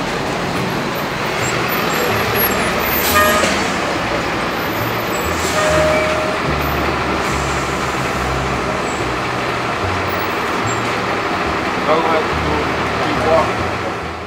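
Steady city street noise: passing traffic with indistinct voices nearby, the voices clearer near the end.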